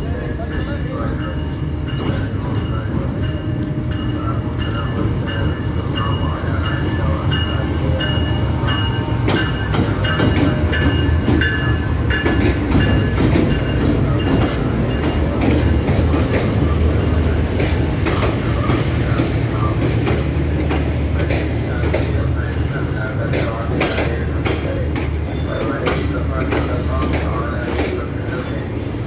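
A passenger train hauled by a Pakistan Railways GEU-40 diesel-electric locomotive arrives and passes close by. The locomotive's rumble grows to its loudest as it goes past about halfway through. Then the coaches roll by, with rapid clicks of wheels over rail joints.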